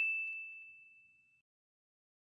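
Ringing tail of a bright, high bell-like ding, the sound effect of a subscribe-button animation, fading away within about a second.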